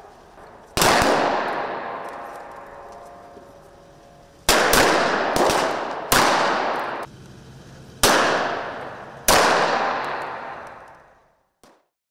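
Gunfire in a simulated attack drill: about seven sharp shots at irregular intervals, several bunched in the middle, each ringing out in a long echo for a second or more.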